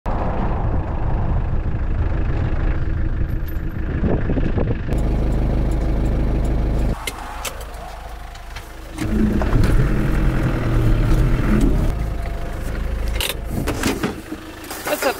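Land Rover Defender running along a rough dirt track, engine and road noise steady with knocks and rattles. The engine note drops away for about two seconds while the gear lever is worked, then picks up again. A click near the end.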